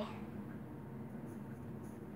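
Quiet room tone: a faint, steady hiss with no distinct events, just after the tail of a spoken word at the very start.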